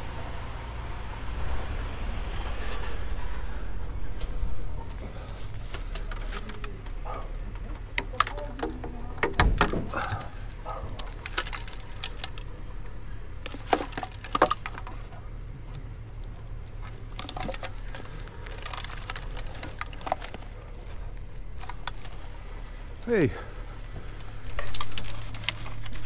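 Electrical cables being snipped and scrap electronics handled with side cutters: scattered sharp clicks, snaps and knocks, clustered in two bursts, over a steady low hum.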